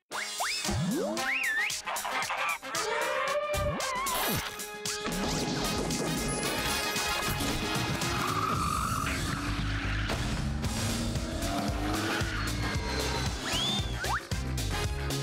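Playful jingle for an animated bumper. It opens with cartoon sound effects, quick rising and falling whistle-like glides and a few sharp hits, then settles into upbeat music with a steady beat.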